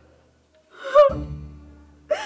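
A woman's short sobbing gasp about a second in, followed at once by a low, sustained background-music note that slowly fades.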